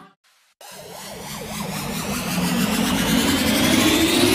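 Sound effect of a car engine revving up, after a brief silence, growing steadily louder and rising in pitch.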